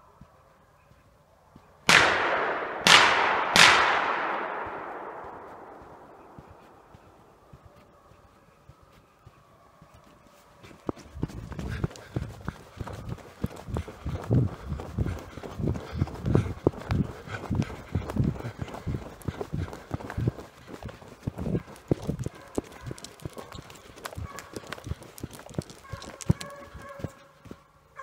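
Three loud gunshots about a second apart, each echoing and dying away over a few seconds. After a lull, running footsteps thud steadily on a sandy dirt road.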